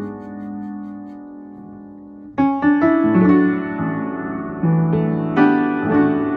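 A rebuilt, roughly 130-year-old Harvard upright piano being played: a chord rings and slowly fades for about two seconds, then louder chords are struck one after another.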